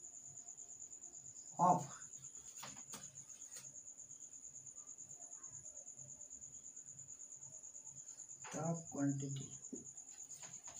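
A cricket chirping steadily, a continuous high-pitched pulsing trill. A few light clicks come about three seconds in, and a man's voice murmurs briefly near the start and again near the end.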